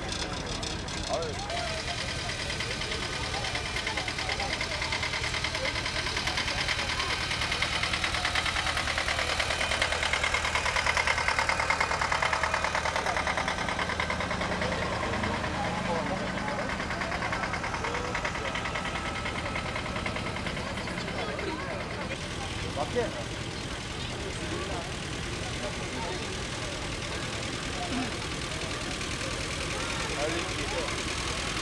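Vintage farm tractor engines running as old tractors and towed farm machinery pass, with a steady low hum that swells and grows louder about halfway through.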